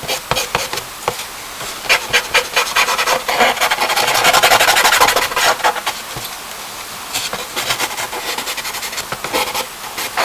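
Charcoal scratching and rubbing on paper close to the microphone: quick short strokes, building about four seconds in to a loud stretch of fast continuous rubbing, then lighter strokes again.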